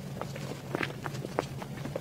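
A person chewing a bite of soft cream-filled cake close to a clip-on microphone: scattered wet mouth clicks and smacks, several a second, over a steady low hum.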